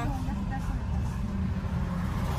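Steady low rumble of a car's engine and road noise heard from inside the cabin as it drives slowly, with one short spoken word at the start.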